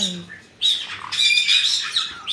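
Caique parrot squawking: a short, sharp call about half a second in, then a longer, shrill call with several high tones at once from about one second to near the end.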